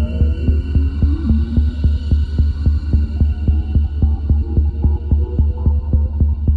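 Electronic music: a deep synth bass pulse at about four beats a second under sustained synth tones that glide slowly upward.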